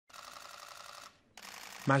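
Rapid, faint clicking of camera shutters in two runs, with a brief break about a second in.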